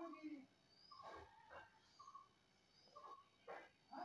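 Near silence with faint strokes of a ballpoint pen writing on paper, and faint short animal calls in the background repeating about once a second.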